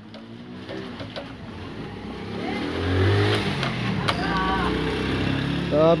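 A motor vehicle engine accelerating: a swelling engine noise that rises in pitch over a few seconds, then levels off.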